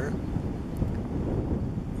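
Wind buffeting the microphone: a steady low rushing noise.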